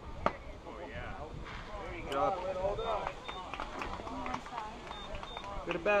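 A single sharp crack of a baseball meeting something at home plate, just as the pitch arrives, about a quarter second in. After it, spectators talk and call out, louder near the end.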